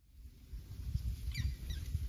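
Wind buffeting the microphone by the river, with a brief run of a few high bird chirps about halfway through. The sound fades in suddenly at the start.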